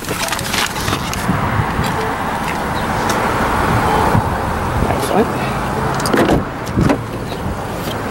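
Rustling handheld movement noise as someone climbs out of a car's front seat and goes to its rear door, with a few clicks and knocks, the loudest near the end as the rear door is opened.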